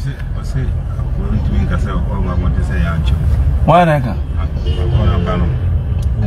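Steady low rumble of a car heard from inside the cabin, with a brief voice about two-thirds of the way through.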